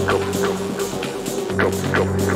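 Techno track playing through a DJ mix: a held synth note with short falling synth swoops repeating over a steady hi-hat. The bass drops out for most of a second in the middle and comes back about one and a half seconds in.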